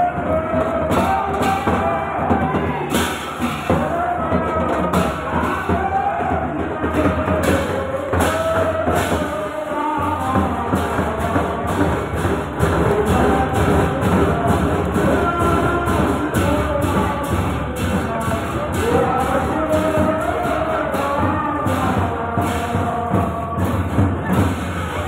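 A crowd of devotees singing kirtan, a devotional chant sung together, over a steady percussion beat.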